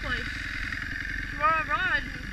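Kawasaki KX250F single-cylinder four-stroke dirt bike engine running steadily, with a low, fast pulsing rumble, while the bike rides over gravel.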